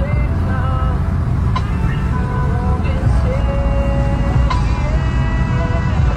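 Car cabin road noise, a steady low rumble while driving on a highway, with a song with a voice playing over it.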